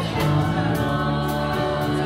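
A church praise band performing a contemporary worship song: sung voices over bass guitar, with a steady beat.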